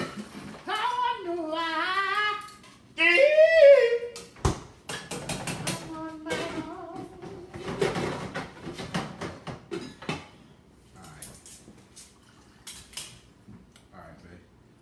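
A voice singing two long, wavering notes, the second higher and louder. Then come a sharp click and several seconds of clicking and clattering kitchenware being handled, thinning to a few faint ticks.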